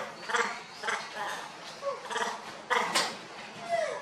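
Young macaques giving a rapid string of short, high calls, several a second, a few ending with a falling pitch.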